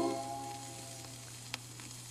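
The last held chord of a 45 rpm vinyl single fades out within the first second, leaving the stylus running on the record's surface with a crackling hiss and one sharp click about one and a half seconds in, over a steady low hum.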